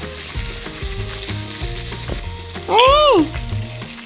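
Mackerel fillets frying in a hot pan with a steady sizzle. About three seconds in, a short, loud voice cry rises and falls in pitch.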